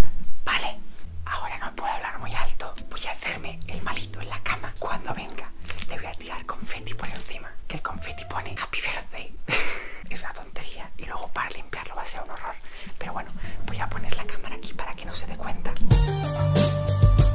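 A man whispering close to the microphone, with background music underneath.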